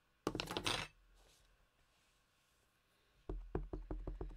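A burst of plastic clatter about a third of a second in as a hinged plastic ink pad case is set down and opened, then a quick run of sharp taps near the end as a clear acrylic stamp block is pressed repeatedly onto the ink pad to ink it.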